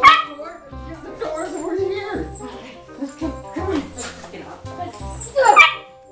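A dog barking over background music, loudest right at the start and again about five and a half seconds in.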